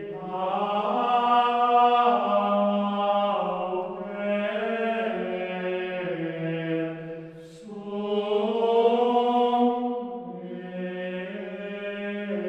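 Voices singing Gregorian chant in slow, sustained phrases of held notes, with short breaks between phrases every three seconds or so.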